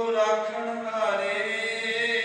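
A man's voice chanting a Sikh prayer in long, drawn-out held notes, with little break between them.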